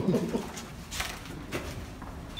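A man laughing briefly at the start, then a quieter stretch with a couple of faint knocks.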